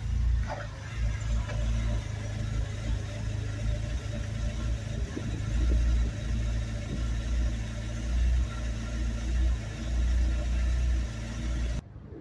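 A small car's engine idling with a surge, its level rising and falling about every two seconds; the owner thinks the surging comes from a failing motor mount. It cuts off abruptly near the end.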